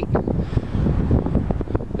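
Wind buffeting a handheld camera's microphone: an uneven, toneless low rush.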